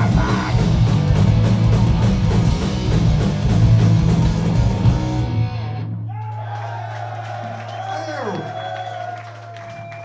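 A punk band playing live through a PA, loud distorted electric guitars, bass and drums, cuts off at the end of a song a little past halfway. After that a held low bass note and sustained guitar tones with feedback ring out, sliding in pitch and slowly dying away.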